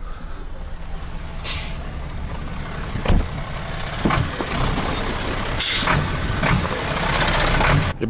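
Diesel crane truck running at idle close by, with two short bursts of air hiss, one about one and a half seconds in and one about five and a half seconds in, and a single thump a little past three seconds.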